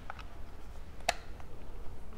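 DC power plug pushed into the port on the side of DJI FPV Goggles V2: a few faint ticks, then one sharper click about a second in as it seats.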